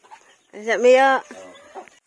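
A rooster crowing once, a loud drawn-out call lasting under a second, beginning about half a second in and trailing off briefly after.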